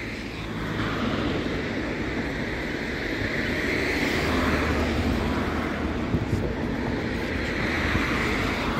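Cars driving past on the street, a steady road noise of tyres and engines that swells to its loudest about halfway through and eases off a little after.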